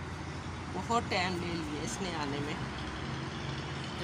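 A woman speaking a few words in Hindi over a steady low background hum.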